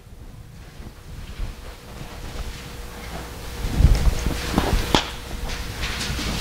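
Handling noise at a pulpit microphone: a low rumble of rustling and bumping that grows louder about three and a half seconds in, with a few sharp clicks, over a faint steady hum.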